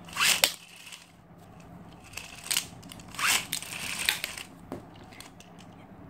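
Plastic Beyblade Volcanic Driver tip being twisted and rubbed by hand in its layer, making a few short scratchy scrapes about a second apart, to wear the driver in.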